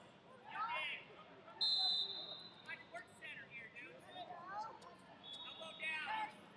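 Coaches and onlookers shouting in short bursts, echoing in a large hall. About a second and a half in, a loud steady high-pitched tone, like a whistle blast, sounds for about a second, with a fainter one near the end.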